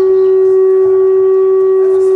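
Loud, steady single-pitched feedback tone from a live band's PA system, one high note held without wavering.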